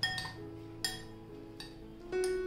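A metal spoon clinks against a glass bowl three times while stirring a cooked vegetable filling, over soft background music.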